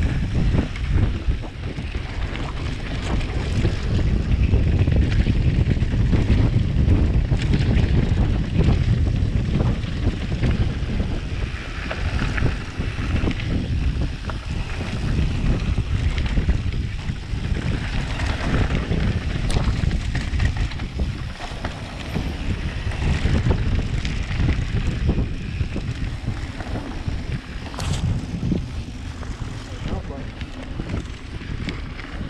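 Wind buffeting the microphone and tyres rumbling over a dirt trail as a mountain bike descends at speed, with a few sharp clicks scattered through.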